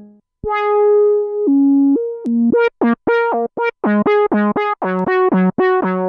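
Cherry Audio Minimode, a software recreation of the Minimoog Model D monophonic synthesizer, playing one line. A note is held briefly, then from about halfway a quick run of short, separated notes, about four a second, jumps between a low and a higher pitch.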